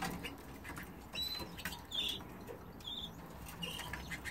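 Young canaries giving a few short, high chirps, spaced out over a few seconds, with faint clicks and rustling from the birds moving about the cage.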